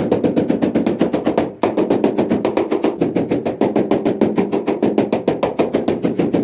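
Rubber mallet tapping a large ceramic wall tile to bed it into the mortar behind it: a fast, even run of knocks, with a brief break about a second and a half in.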